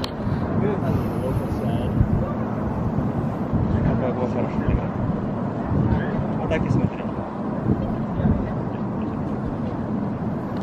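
Outdoor ambience of people's voices in the background over a steady low rumble.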